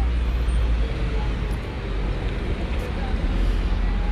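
Steady street traffic noise: a constant low rumble of road vehicles with an even hiss over it.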